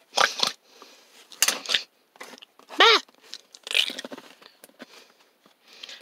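Handling noise of small plastic toys: a toy figure and a toy piece picked up, moved and set down on a rubber mat, in short, irregular scrapes and clicks.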